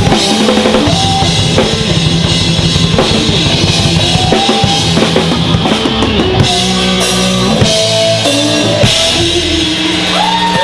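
Live rock band playing loudly, led by a drum kit with rapid bass drum strokes and snare hits under held electric guitar notes.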